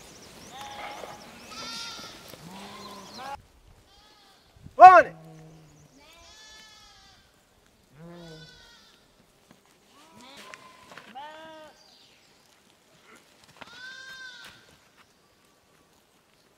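Sheep bleating: several overlapping calls in the first three seconds, then single bleats every second or two, the loudest just before five seconds in.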